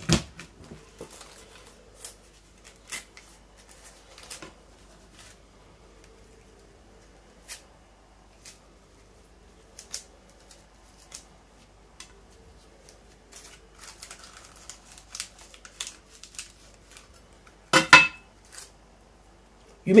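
Sharp knife cutting into a hard pineapple crown over a stainless steel tray: scattered small clicks and scrapes of the blade on the tough stem and the metal, with a louder clatter near the end.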